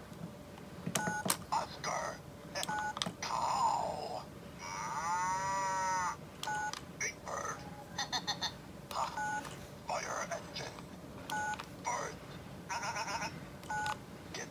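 Sesame Street talking toy phone with its buttons pressed one after another: each press gives a short electronic beep followed by a brief recorded voice clip or sound effect, with a longer sliding, warbling sound effect about five seconds in.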